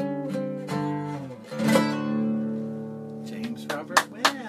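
Acoustic guitar strumming the song's closing chords. The last chord, struck about a second and a half in, is left ringing and fades away. Brief voices begin near the end.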